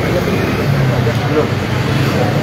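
Indistinct voices of several people talking, over a steady low hum of a vehicle engine running.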